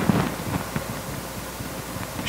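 A pause in speech: steady, even hiss of room tone picked up by the pulpit microphone.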